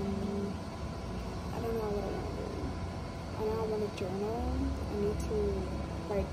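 A voice talking in short, indistinct phrases over a steady low rumble.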